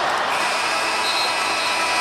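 Arena crowd noise, with the game-clock horn sounding about a third of a second in and holding for about a second and a half: the end of regulation with the score tied.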